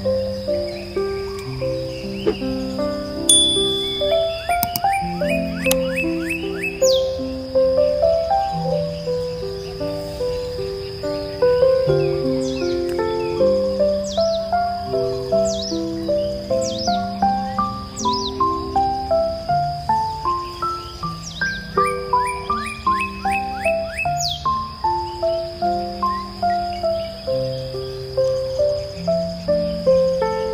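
Gentle instrumental background music, a flowing line of soft, melodic chime-like or keyboard notes. Short, high, falling chirps like birdsong are mixed in at several points, over a steady high tone typical of a nature-ambience bed.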